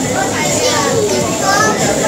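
Steady background chatter of many voices, with children's voices among them, talking and playing.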